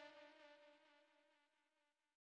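Music fading out, a few held tones dying away to near silence about a second in.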